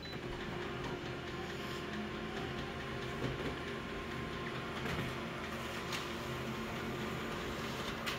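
Office multifunction colour copier running as it prints a copy: a steady mechanical hum with a few steady tones in it.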